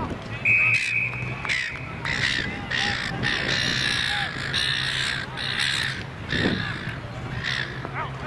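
A whistle blown once in a steady high note for about a second, starting about half a second in. It is followed by several seconds of loud, harsh calling.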